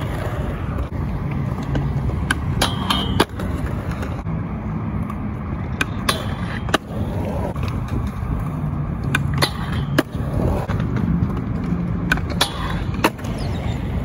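Skateboard wheels rolling on concrete with a steady rumble, broken repeatedly by sharp clacks as the board pops, lands and grinds on a concrete ledge.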